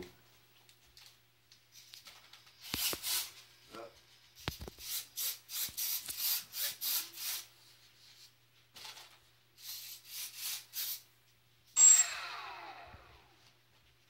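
Rubbing and scraping handling noise from a foam RC plane being turned and held: a run of short scraping strokes, a pause, a few more, then one sharp knock near the end that rings briefly and fades.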